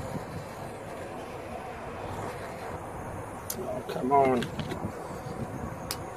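Steady rushing wind noise on the microphone, with a few light clicks from working at the wiring loom.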